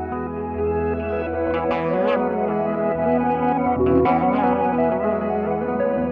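Electric guitars played through effects pedals: held chords and notes with echo and light distortion, and bent, wavering notes about two seconds in and again around four seconds in.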